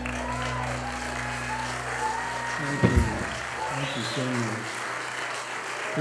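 Audience applauding as the band's final chord rings out and dies away, the chord stopping about three seconds in with a loud thump. Applause carries on after it, with voices in the second half.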